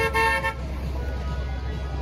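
A short car horn honk, one steady tone about half a second long at the start, over the low rumble of city street traffic.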